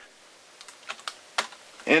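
A handful of small, sharp plastic clicks and taps as a cable plug is fitted into the side port of a handheld camcorder.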